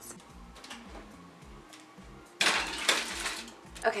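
Kitchen cookware clattering in one noisy burst of about a second, a little past halfway, after a quiet start.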